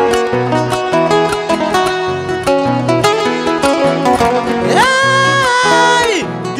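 Acoustic guitars playing a Panamanian décima accompaniment, with quick plucked melody notes over a bass line. Near the end, the singer comes in with one long held vocal note.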